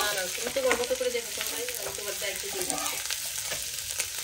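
Bitter gourd stir-fry sizzling in a nonstick frying pan, stirred with a wooden spatula that scrapes and taps against the pan in quick, uneven strokes.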